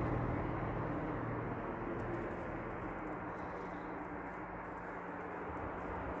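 Steady low background rumble with a faint hum, fading slightly, with no distinct sounds standing out.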